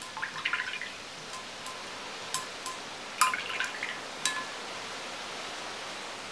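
A paintbrush rinsed in a glass water jar: light splashes and sharp clinks of the brush against the glass, in a cluster about half a second in and another around three seconds in.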